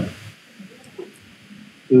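A voice trailing off, then a short quiet pause with low room noise and one faint brief sound about a second in, before a voice starts again at the end.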